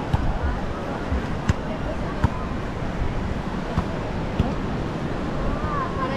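Steady wash of surf and wind on a beach, with faint voices of beachgoers. A few sharp thuds stand out at irregular moments, the clearest about a second and a half and two seconds in.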